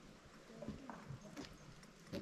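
A few faint, irregular footsteps on a wooden boardwalk, knocks roughly half a second apart, over quiet forest background.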